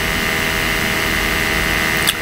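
A steady mechanical hum with a thin high whine over it, unchanging throughout: the room's background machine noise, such as an air conditioner or fan.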